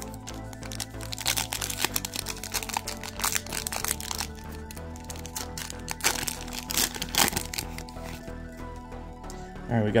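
Foil trading-card pack wrapper crinkling and crackling as it is torn open and the cards pulled out, in two spells, with background music underneath.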